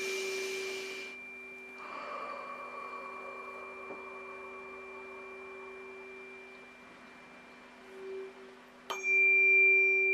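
Tuning fork ringing with several steady pure tones that slowly die away, then struck again about nine seconds in with a sharp tap and ringing out louder. A short breathy hiss sounds in the first second.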